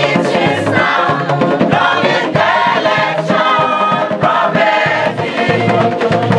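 A large group of women singing together, with the low, steady beat of a bamboo band's struck bamboo tubes under the voices.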